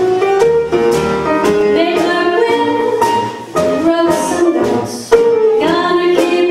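Female vocalist singing a jazz song, accompanied by a small jazz band of piano, upright bass and drums.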